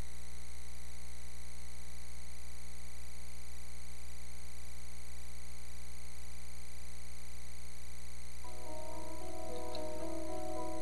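Steady low electrical mains hum with faint hiss in the audio feed. About eight and a half seconds in, soft sustained music begins.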